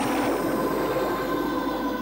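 Horror sound effect: a loud rushing swell of noise over the score's held, droning tones, easing off at the end.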